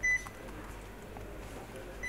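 A single short, high electronic beep at the very start, followed by low room tone.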